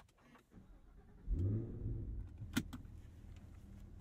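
Cadillac Escalade V's 6.2-liter supercharged V8 starting, heard from inside the cabin: after a brief crank it catches about a second in with a flare of revs, then settles into a steady idle. A sharp click comes midway.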